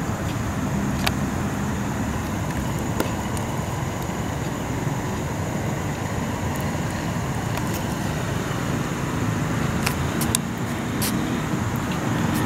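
Steady road traffic noise, with a few faint clicks.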